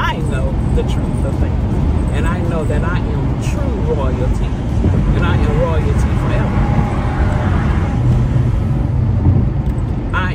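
Steady low road and engine rumble inside a moving car's cabin, with a woman's voice heard over it at intervals.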